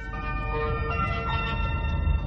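Public-address chime on a Chinese high-speed train: a short run of sustained bell-like tones, the notes coming in one after another and held together, over the low rumble of the moving train. The chime signals the on-board announcement that follows.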